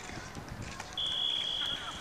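A referee's whistle blown once, a steady high blast starting about a second in and lasting about a second, over background voices on the field.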